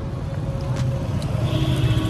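Road traffic on a busy street: vehicle engines running in a steady low rumble.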